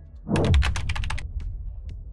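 Title-card transition sound effect: a deep low boom about a third of a second in, with a fast run of keyboard-typing clicks over it that thins to scattered clicks as the boom fades.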